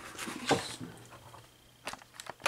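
Cardboard pizza box being handled: a rustle with a sharp knock about half a second in, then a quieter stretch and a couple of light clicks near the end.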